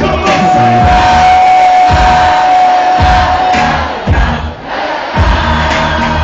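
Live French rap concert music over a large hall PA, with heavy bass hits about once a second and the crowd shouting along. A long held note runs through the first half, and the music drops briefly just past the middle before the beat comes back.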